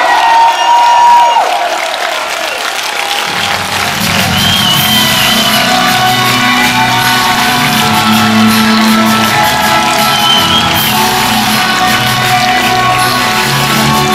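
Loud power metal music at a concert with a crowd shouting and cheering. A held high note falls away in the first second or so, and about three seconds in the bass and drums come back in under the full band.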